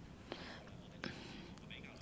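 A short pause between spoken sentences: faint room tone picked up by a clip-on microphone, with two soft, short breathy sounds, about a third of a second and a second in.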